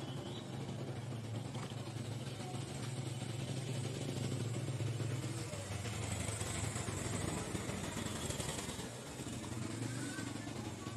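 A motor engine running steadily, a low continuous hum over background noise, with a slight drop in pitch about halfway through.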